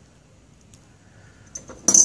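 Fingers working among the dry leaves and gravel at the base of a potted succulent: a few faint ticks, then one short, sharp crackle near the end.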